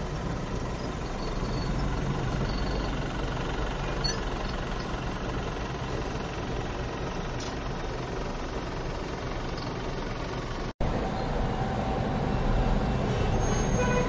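Steady rumble of idling and slow-crawling cars, trucks and buses in a traffic jam, heard from inside a car. The sound cuts out for an instant about ten and a half seconds in and comes back slightly louder.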